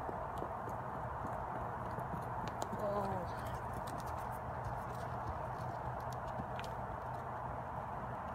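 A horse's hoofbeats on the arena's dirt footing as it walks close past, a scatter of soft footfalls and clicks over a steady background noise. A short voice-like pitched sound falls in pitch about three seconds in.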